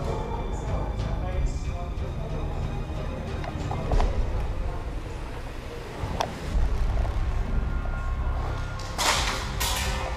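Indoor airsoft game over a low steady rumble: two sharp single cracks of airsoft fire or BB hits, about four and six seconds in, and a brief loud rushing hiss near the end.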